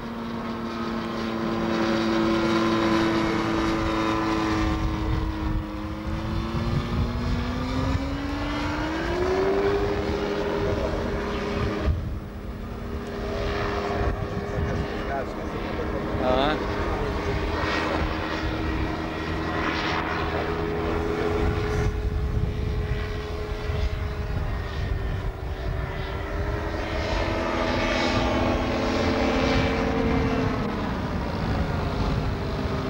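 Motorized hang glider's engine and propeller droning steadily overhead. The drone's pitch rises about eight seconds in and again near the end.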